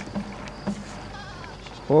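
Faint bleating of livestock over quiet open-air background.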